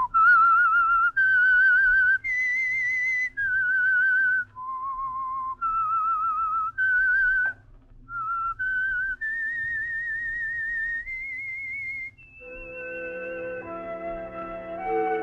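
A person whistling a slow theme melody: about a dozen held notes with a wavering vibrato, climbing to its highest notes near the end. It is the signature whistle that closes an old-time radio mystery drama. Orchestral music comes in under it with a held chord near the end.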